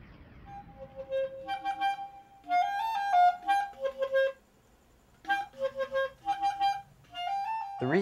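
Solo clarinet playing a melody in two phrases of separate notes, with a pause of about a second between them.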